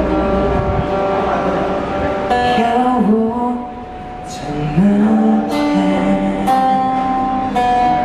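A small live band playing a song: acoustic guitar strummed and picked under long held notes and a singer's voice, with a brief quieter stretch midway.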